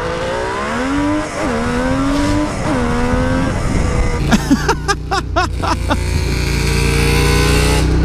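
750cc three-cylinder two-stroke engine of a Kawasaki H2 chopper accelerating hard. Its pitch climbs and then drops at each of two upshifts in the first three and a half seconds. After a choppy passage about halfway through, a steadier engine note climbs slowly.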